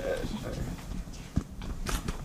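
Low, indistinct murmuring voices in a room, with two sharp clicks, one about one and a half seconds in and one near the end.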